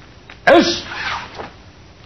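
Karate practitioner's short, sharp shout with a punch in the kata, once about half a second in. It starts with a crack, falls in pitch and trails off over about a second.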